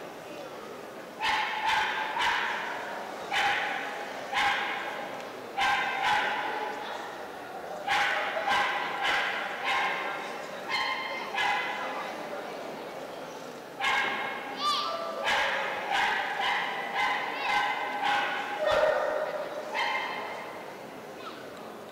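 A dog barking repeatedly in volleys of short, sharp barks, over twenty in all, with a couple of pauses of a second or two.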